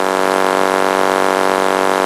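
A steady, loud buzzing hum that holds one pitch throughout.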